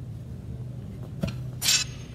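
Small bones being picked up: a short click about a second in, then a brief, bright, high clink-rattle near the end.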